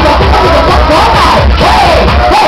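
Loud dance music with a steady heavy bass beat, and a crowd shouting and cheering over it.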